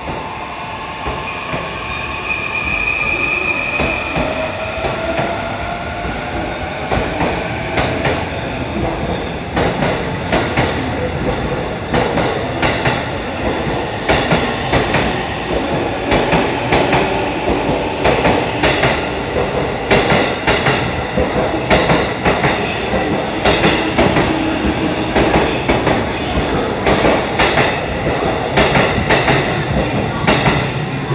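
E531 series electric commuter train accelerating away from a platform. Its inverter-driven traction motors give a whine that rises in pitch over the first several seconds. Then come wheel clicks over the rail joints, coming faster and faster as the train gathers speed.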